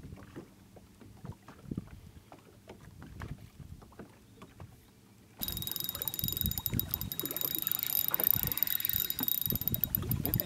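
Water lapping against a boat hull with light wind, dotted with small clicks. About halfway through it jumps abruptly louder and hissier, with quick ticking.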